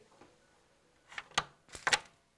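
Near silence, then a quick run of about five sharp clicks in the last second.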